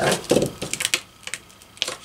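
A few light clicks and crackles of transfer paper being handled and peeled, in a short cluster about half a second in and once more near the end.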